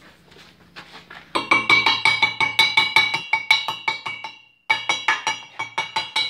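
Rapid hammer blows on steel, about six a second, each leaving a bright metallic ring from the freshly welded pipe and flange plate. The hammering starts about a second in, stops briefly near the end and then resumes.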